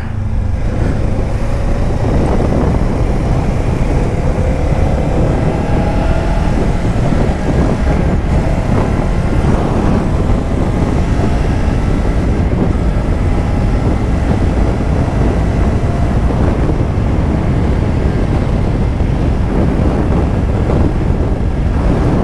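Kawasaki Ninja 500 parallel-twin motorcycle speeding up from about 23 to 59 mph, its engine note rising faintly under a steady rush of wind on the microphone, which is the loudest sound.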